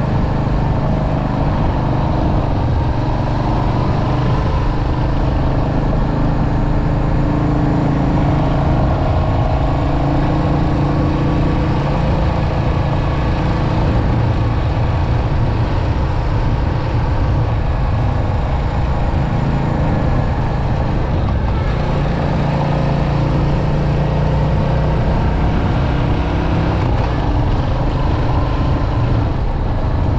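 A Royal Enfield Hunter 350's 349 cc single-cylinder J-series engine running steadily at road speed, heard from on the bike. Its note shifts a little as the rider works along the curves.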